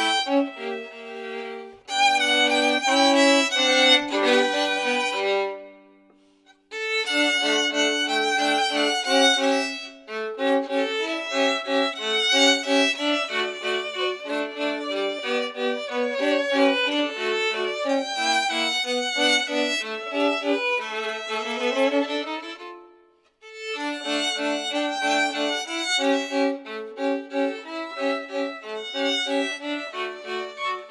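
Two violins playing a duet, a melody over a second part in short rhythmic notes. The music stops briefly twice, about six seconds in and again about 23 seconds in, with a rising slide just before the second stop.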